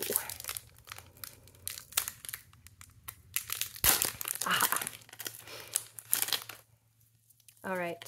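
Foil Pokémon TCG Lost Origin booster pack crinkling as it is torn open and the cards are pulled out, with a louder crackle about four seconds in.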